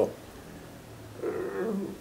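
A man's short, quiet hummed hesitation sound, like a drawn-out 'mmm', starting a little past a second in after a moment of room tone.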